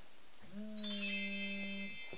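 A woman hums or holds a steady 'mmm' on one low note for about a second and a half. About a second in, a high, ringing chime of several thin tones sounds over it.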